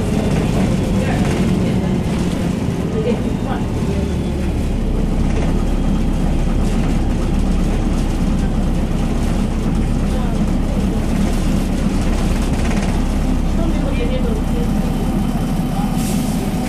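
Cabin noise of a MAN NL202 city bus on the move: the steady low drone of its diesel engine and drivetrain with road noise, the rumble deepening a little about four seconds in.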